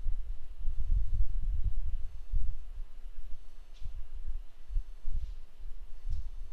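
Low, uneven rumble with no speech, rising and falling irregularly.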